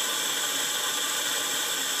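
Steady hiss of a running bath tap heard from below the tub, where water is leaking in around the supply pipes and drain.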